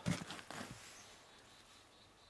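A few faint knocks and rustles as a split piece of firewood is picked up and stood back on the chopping block, then quiet.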